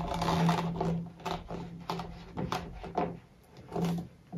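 A plastic sewer-pipe reducer being twisted and pushed onto a 50 mm plastic pipe, the plastic parts rubbing with a low, stop-and-start creaking and short scraping strokes.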